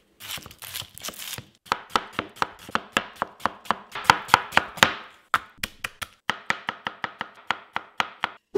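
Chef's knife chopping an onion on a cutting board: a quick, even run of blade strikes against the board, about three to four a second, with a brief pause about five seconds in.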